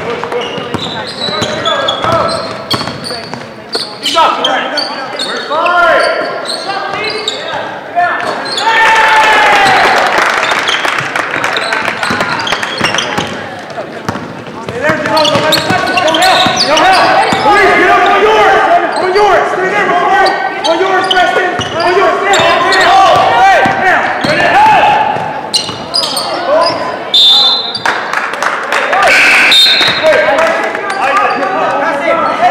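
Basketball game in a gym: a basketball bouncing on the hardwood court and sneakers on the floor, amid shouting voices of players, coaches and spectators that echo in the hall.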